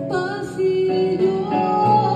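A woman singing a Colombian pasillo into a microphone, accompanied by piano played on a digital stage keyboard and by guitar. About halfway through she starts a long held note.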